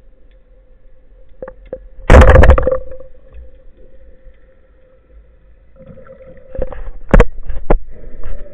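Band-powered speargun fired underwater: one loud, sudden snap with a rattling tail about two seconds in, fading within about half a second. Several sharp knocks follow near the end.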